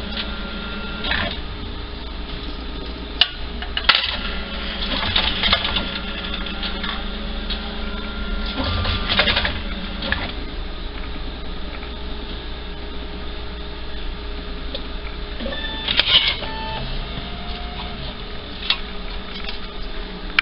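Ticket vending machine at work: several separate bursts of clicking and whirring from its mechanism, with a few short electronic beeps over a steady machine hum.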